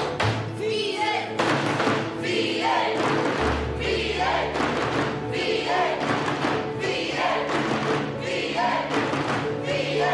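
A group of teenagers chanting together in unison, with rhythmic claps and thumps on school desks keeping the beat. Background music with a steady low bass runs underneath.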